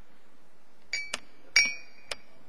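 Three sharp clinks of a small hard object, two of them leaving a short ringing tone; the loudest comes about one and a half seconds in.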